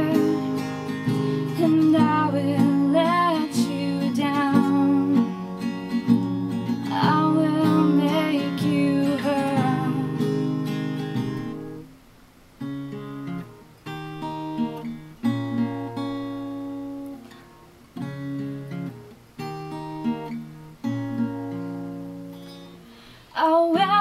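Acoustic guitar strumming chords under a woman's singing. About twelve seconds in the singing stops and the guitar carries on alone, quieter, as separate chords with short pauses between them.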